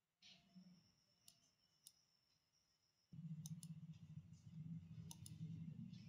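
Near silence with a few faint computer mouse clicks; a faint low hum comes in about halfway, with a couple of quick double clicks.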